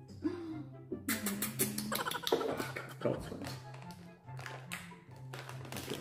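Background music with a steady bass line, over a run of taps and crinkles from a plastic snack packet being handled and opened.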